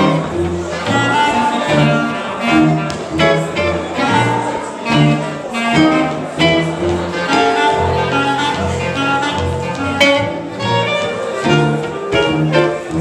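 Small swing jazz group playing an instrumental passage. A clarinet carries a running melody over a plucked upright double bass that walks beneath at about two notes a second.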